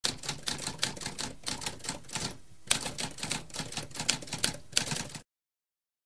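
Mechanical typewriter typing: a rapid run of key strikes, about six a second. There is a short pause a little over two seconds in, then the typing resumes and cuts off abruptly about five seconds in.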